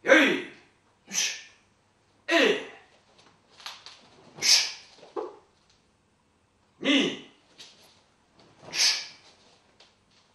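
A karateka's short vocal bursts while performing kicks and strikes: brief shouts with a falling pitch alternating with sharp hissing exhalations, about nine in all, each under a second and a second or two apart.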